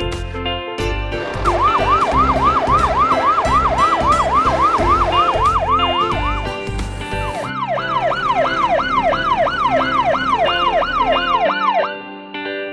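Cartoon fire truck siren sound effect: a fast yelp, its pitch sweeping up and down about four times a second, over cheerful background music with a steady beat. It sounds for about five seconds, breaks off briefly, then starts again for about four more.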